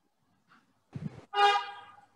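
A short single honk of a vehicle horn about a second and a half in: one steady tone that fades away within about half a second.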